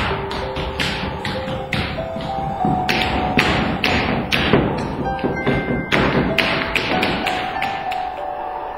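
Music with a slow held melody over a run of sharp, uneven wooden taps and knocks, about two to three a second, from broom handles struck on a wooden stage floor.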